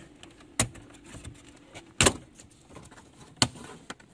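Plastic dash trim strip on a Holden VE Commodore being pulled off, its retaining clips letting go with three sharp clicks. The loudest click comes about two seconds in.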